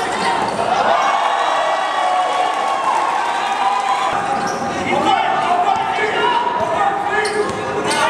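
Live court sound of a basketball game in a large gym: the ball bouncing on the court as players dribble, with players' and spectators' voices echoing in the hall.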